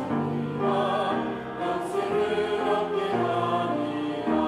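Church choir singing slow, sustained chords with a low held accompaniment beneath.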